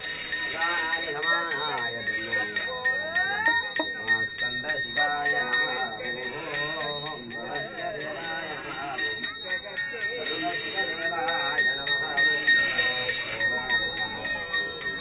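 Brass hand bell rung continuously in temple worship, a steady high ringing with a rapid clatter of strokes, with voices underneath.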